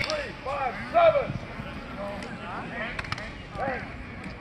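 Short shouted calls from voices across an open football practice field, each a brief rising-and-falling 'hey'-like shout, with a sharp tick about three seconds in.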